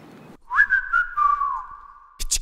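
A whistling sound: a quick upward slide into two high notes held together for about a second and a half, the lower one dipping briefly partway through.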